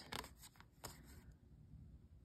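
Near silence, with a few faint clicks and slides of tarot cards being moved from hand to hand in the first second.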